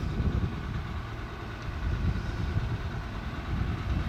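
Wind buffeting the camera's microphone in an uneven low rumble, over the faint steady drone of construction machinery such as an excavator's diesel engine.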